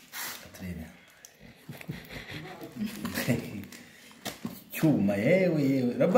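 People talking, loudest from near the end, with a few brief crinkles and scrapes of aluminium foil as a knife cuts into a whole roast rabbit.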